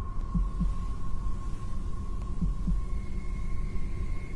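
A slow heartbeat of paired soft thumps, one pair about every two seconds, over a low steady hum and a faint steady high tone.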